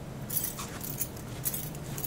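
Light rustling and clicking from a person moving up to the camera and reaching for it, with sharper ticks about half a second and one and a half seconds in, over a steady low hum.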